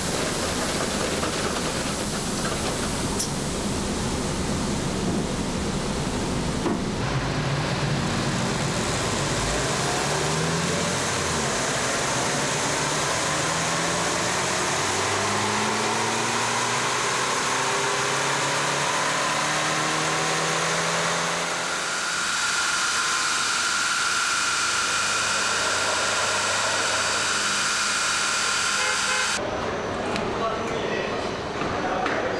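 Car-factory production-line machinery: a steady hiss with a motor whine rising slowly in pitch. About two-thirds of the way through it changes abruptly to a steady high whine over the hiss.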